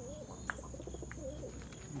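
Domestic pigeons cooing softly, with a single sharp click about half a second in.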